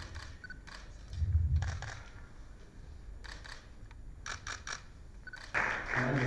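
Camera shutters clicking in short quick runs, with a low rumble about a second in and a louder burst of noise near the end.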